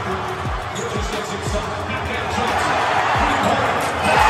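Big arena crowd of fans cheering and shouting over music from the arena's sound system with deep, booming bass hits about every half second. The crowd noise swells louder near the end.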